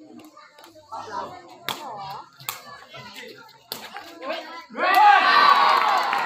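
A few sharp smacks of a sepak takraw ball being kicked during a rally, then about five seconds in spectators burst into loud shouting and cheering.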